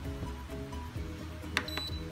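Background music, and about one and a half seconds in a short high electronic beep from the Philips All-in-One pressure cooker's control panel as a button is pressed.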